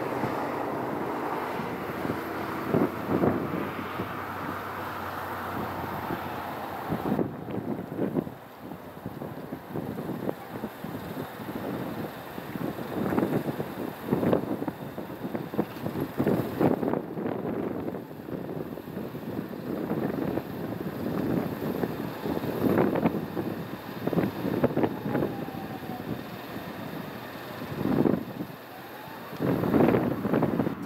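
Outdoor street noise on a windy camera microphone. Road traffic hums steadily for the first several seconds, then irregular gusts of wind buffet the microphone.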